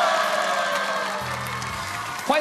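Studio audience clapping and cheering over background music, the whole fading down.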